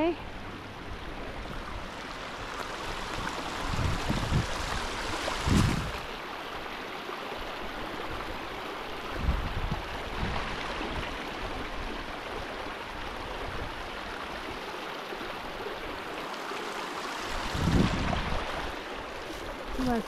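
Small mountain stream running steadily over rocks, with a few low, short thumps scattered through it.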